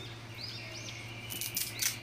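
Small birds chirping in short arched calls, twice. Near the end comes a brief crackle as a strip of hook-and-loop (Velcro) tape starts to be pulled apart.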